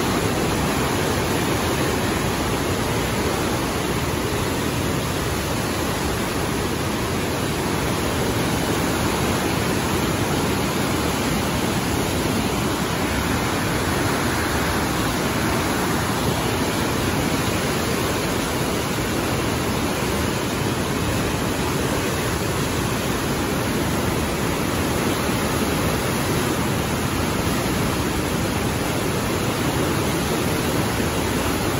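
Level 6 whitewater rapids of the Niagara River rushing: a loud, steady, unbroken wash of water noise.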